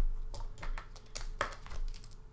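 Irregular light clicks and rustles of handling at a desk, with the strongest clicks in the second half, over a low hum.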